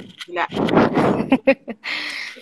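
A woman laughing and speaking in short, broken-up bursts over a choppy live-stream audio link.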